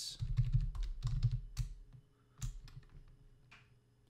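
Typing on a computer keyboard: a quick run of keystrokes in the first couple of seconds, then a few single key presses.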